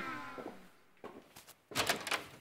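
The falling, fading tail of a brassy Latin music sting, then several sharp clicks in the second half, louder near the end, fitting high-heeled footsteps on a tiled floor.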